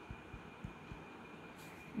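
Faint, short low thuds, about four in the first second, from a stylus writing on a tablet screen, over a steady faint high-pitched whine.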